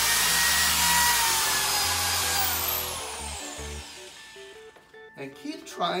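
Corded electric drill running as it bores into the wall to widen a hole that is still too small for a wall anchor. Its whine holds for about three seconds, then falls in pitch and fades as the drill winds down.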